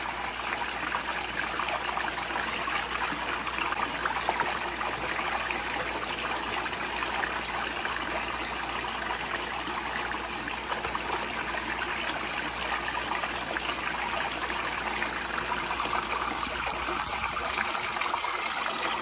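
Water running steadily down a six-inch recirculating gold cleanup sluice and splashing off its end into the tub below, an even, unbroken pour.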